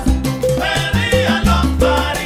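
Salsa played by a big band: bright ensemble phrases swell twice over repeating upright-bass notes and percussion.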